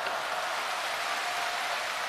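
Audience applauding steadily at the end of a crosstalk routine.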